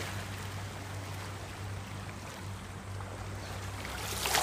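Lapping open water and a swimmer's faint splashing over a steady low hum. The louder splashes of the swimming strokes fall just before and just after this stretch.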